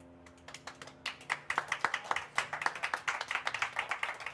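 Small audience clapping by hand: a few claps at first, quickly building into dense applause, while the last electric-piano chord of the song dies away underneath.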